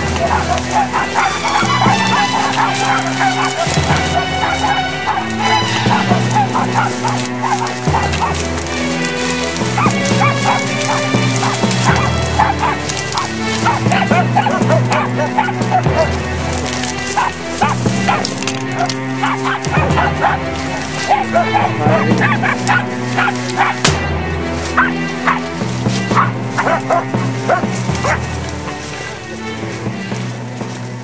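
Hunting dogs barking repeatedly, baying at a wounded young wild boar they have tracked down, over background music whose bass note changes about every four seconds.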